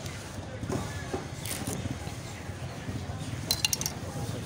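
A steel butcher's knife laid down on a cleaver on a wooden chopping block, giving a quick cluster of sharp metal clinks near the end, over steady low background noise.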